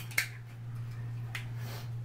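White plastic stick-on wall holder being handled: a sharp plastic click just after the start, then a brief light rustle about a second and a half in, over a steady low hum.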